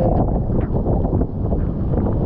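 Stormy monsoon wind buffeting the camera microphone: a steady, loud, low rumble.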